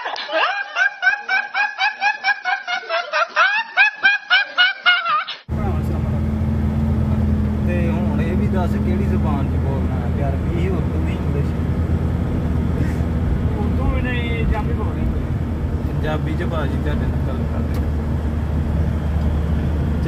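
A young man's high-pitched laugh, a rapid string of short bursts at about four a second that climb in pitch, cut off suddenly about five seconds in. Then the steady low drone of a truck's engine heard from inside the cab.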